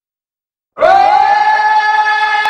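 Silence, then about three-quarters of a second in a single loud held note slides up into pitch and sustains steadily: the opening note of the song's music track.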